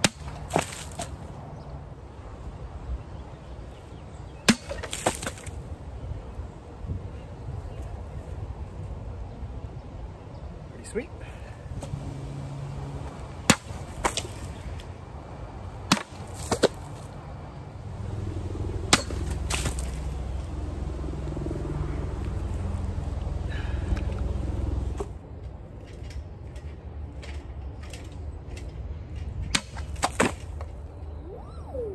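Sabre cutting water-filled plastic bottles in a series of test cuts: about ten sharp cracks, often in pairs about half a second apart. A low rumble runs under the middle for several seconds.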